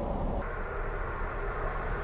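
Steady low rumble of airliner cabin noise from a Boeing 777-200ER in cruise. About half a second in the sound shifts, the deep rumble thinning and a higher hiss coming in.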